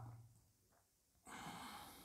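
Near silence, then a person's faint breath out, a soft sigh-like exhale starting a little past a second in.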